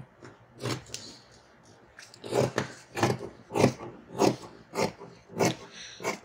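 Dressmaking shears snipping through fabric along a paper pattern: one snip near the start, a pause, then a steady run of cuts about two a second from about two seconds in.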